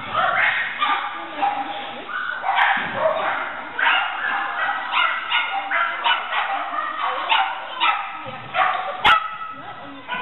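Shetland sheepdog barking over and over in short, rapid barks, with a single sharp knock about nine seconds in.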